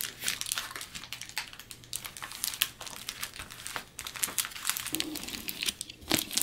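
Foil tape and Reflectix foil bubble insulation crinkling and crackling in quick, irregular crackles as the tape is folded over the strip's edge and pressed down by hand.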